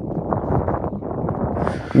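Wind buffeting the microphone: a dense, irregular low rumble.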